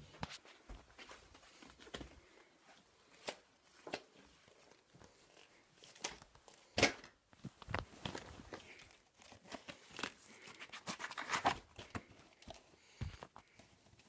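Handling of a plastic VHS cassette and its case: scattered faint clicks, knocks and rustles. The loudest come about 7 seconds in and around 11 seconds.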